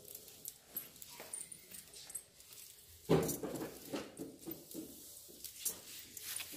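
Soft grass broom sweeping a tiled floor in short, repeated swishing strokes. A louder, deeper sound breaks in about three seconds in.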